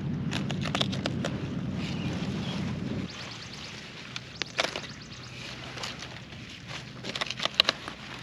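Crisp snapping and rustling of lettuce leaves as heads of lettuce are cut and handled. The clicks come in short clusters. Under the first few seconds there is a low rumble, which drops away suddenly about three seconds in.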